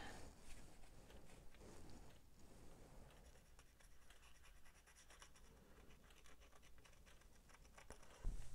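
Faint, light ticking and scratching of a silver paint marker's nib dabbed against a small die-cast metal toy engine.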